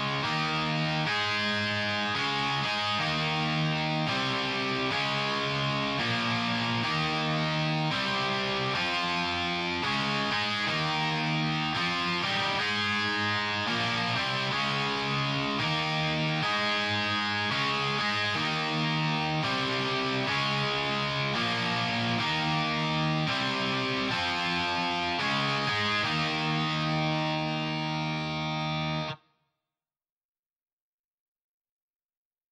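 Programmed guitar part played back alone on sampled virtual guitars, Three-Body Tech Heavier 7 Strings distorted electric guitar layered with MusicLab RealEight, playing sustained chords that change every beat or two. It stops abruptly near the end.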